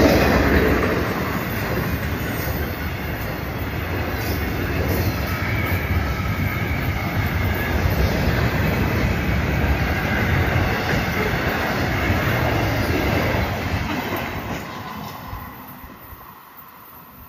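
Florida East Coast freight train's intermodal well cars rolling past close by: a steady rumble and clatter of steel wheels on rail, fading over the last two seconds as the end of the train passes.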